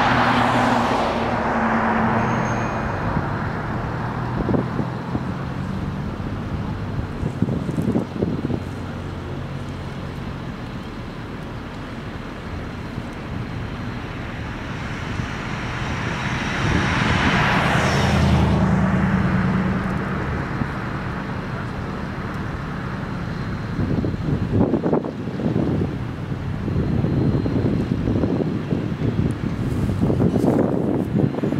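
Road vehicles passing close by: a pickup truck at the start and a sedan about seventeen seconds in, each an engine hum and tyre hiss that swells and fades. Wind buffets the microphone in short gusts near the end.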